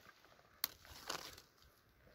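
Faint crunch of a damp clod of rocky soil being picked up and crumbled between the fingers: one sharp click a little past halfway, then a soft crumbling rustle.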